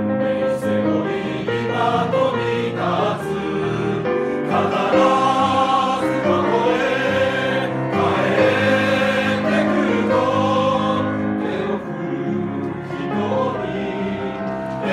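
Amateur mixed choir, mostly men, singing an anime theme song in Japanese, with long held notes.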